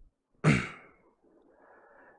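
A man's short voiced sigh, falling in pitch and fading quickly, about half a second in.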